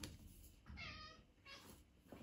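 A house cat meowing: one meow about a second in, then a fainter, shorter one.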